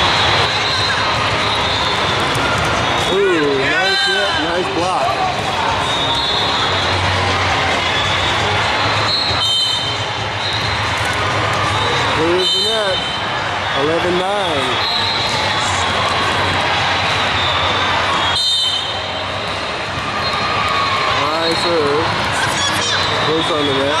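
Volleyball game in a large, echoing sports hall: a constant din of crowd and players from many courts, with voices calling out now and then and a few sharp ball hits.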